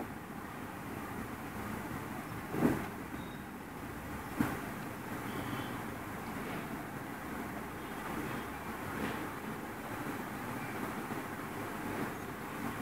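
A steady rumbling background noise, with two short knocks about two and a half and four and a half seconds in, the first the louder.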